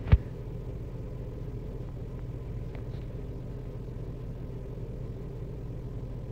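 Steady low hum of a car cabin with the engine running, after a single thump right at the start.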